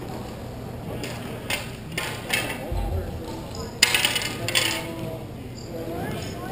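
Hockey sticks clacking sharply on the rink floor during play, a scattered run of hard clacks with the loudest about four seconds in, and a dull thud a little before it.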